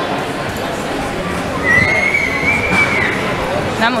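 R2-D2 replica droid giving one long electronic whistle, a held high tone that rises slightly and drops off at the end, over the hubbub of a convention hall.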